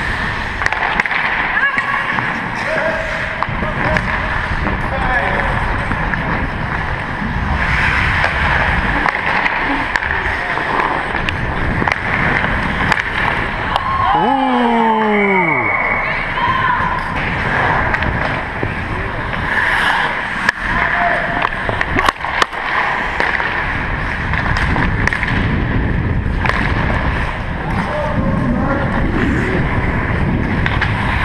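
Ice hockey play heard from a skater's body-worn camera: continuous scraping of skate blades on the ice with low rumble of movement on the microphone, scattered stick and puck clacks, and players' voices in the rink. About halfway through, one voice calls out, falling sharply in pitch.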